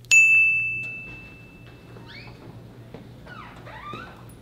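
A single bright, bell-like ding that rings out at once and fades away over about two seconds.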